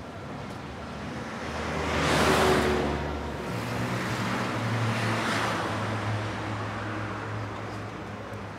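Street traffic: two vehicles pass one after the other, the first loudest about two seconds in, the second a few seconds later, with a low engine hum between them.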